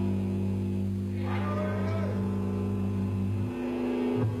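Black metal band playing live: a held chord of steady low notes, with a harsh, drawn-out growled vocal line about a second in. The chord changes near the end.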